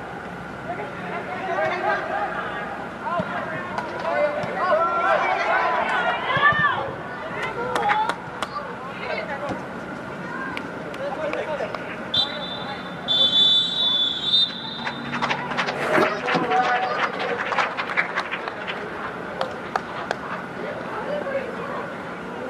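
Players' and onlookers' voices calling out across the pitch, echoing in an indoor dome, with a referee's whistle blown twice about twelve seconds in, a short blast then a longer one, typical of the whistle ending a half. A patter of sharp clicks follows the whistle.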